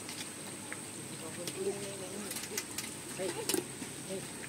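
Scattered sharp clicks and light rustling from tomato plants being cut and handled. Under them are a faint murmuring voice and a steady high-pitched whine.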